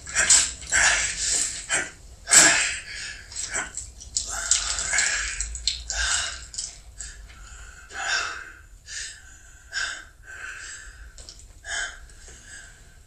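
A man breathing hard in ragged gasps, a string of sharp breaths that come less often toward the end, as he pauses while drinking from a plastic water bottle in exhaustion.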